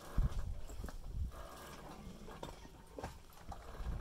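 Small waves lapping and slapping irregularly against a boat's hull, with a low rumble and a few soft knocks.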